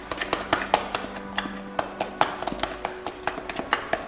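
A metal knife clicking and tapping rapidly and irregularly against the side of a plastic bowl as thick white fondant is stirred, over background music.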